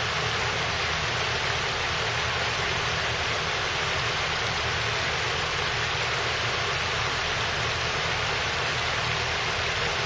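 Shallow river water flowing over a flat rock bed, heard as a steady, even wash of noise.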